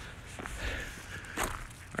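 Footsteps on a paved street, a few soft steps with the clearest about half a second and a second and a half in.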